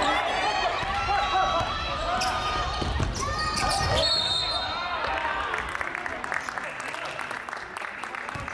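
Game sounds of indoor basketball in a gym: the ball dribbled on the wooden court, sneakers squeaking, and players calling out, with the hall's echo.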